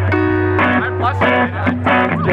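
A live band playing, with guitar chords strummed over a held low bass note.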